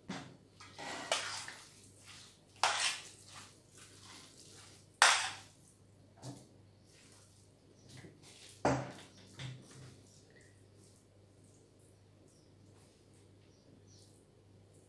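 Thin hand-rolled pastry sheets rustling and swishing as they are handled and laid into a round metal baking tray, in a few bursts over the first five seconds, the loudest about five seconds in. Later a metal spoon clinks a few times on a metal bowl and the tray as filling is spooned onto the pastry.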